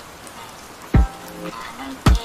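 Slow lo-fi music over a steady hiss of rain: a few held notes and one deep kick-drum thump about halfway through.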